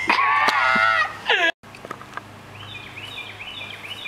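Men laughing loudly for about a second and a half, then, after an abrupt cut, a small bird chirping: a short falling call repeated about twice a second.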